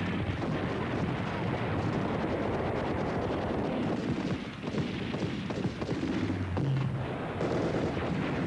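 Battle gunfire: several rifles firing rapid shots that run together without a break.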